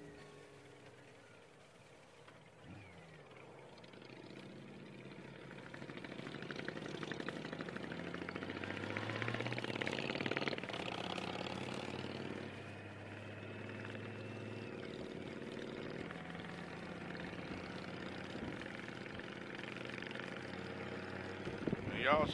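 Motorcycle engines and road noise while riding in a group. The sound grows louder over the first ten seconds or so as the pitch climbs, then dips briefly and holds steady.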